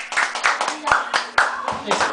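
A small group clapping by hand, unevenly, with voices talking over it.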